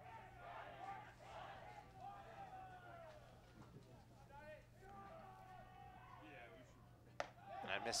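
Faint ballpark ambience of distant voices and chatter over a steady low hum, with one sharp pop about seven seconds in: a pitched baseball smacking into the catcher's mitt.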